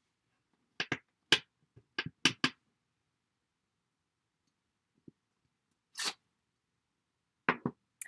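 Sharp taps of a clear acrylic stamp block against an ink pad as a rubber stamp is inked: about six in quick succession, then a few scattered knocks and a soft rub as the block is pressed onto card stock.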